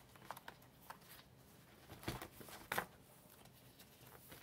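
Planner pages and dividers being handled and set down, giving faint paper rustles and light taps. The loudest come about two seconds in and just before three seconds.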